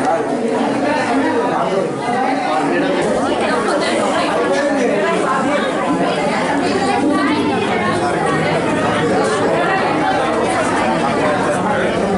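Many people talking at once in a crowded room: continuous overlapping chatter with no single voice standing out.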